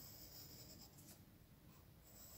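Very faint scratching of a pencil on drawing paper as dark outline strokes are drawn, barely above the room hiss.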